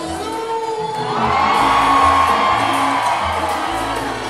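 A live salsa band playing, with a crowd cheering and whooping that swells about a second in and fades near the end.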